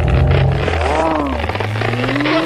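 Animated film fight sound mix: a deep low rumble from a heavy body-slam impact, fading about a second and a half in, with pitched tones swooping up and down over it.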